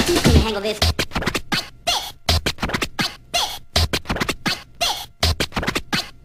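Oldskool UK breakbeat track in a breakdown: the full drum groove drops out about half a second in, leaving sparse kick-drum hits and short scratched vocal-sample stabs with gaps between them.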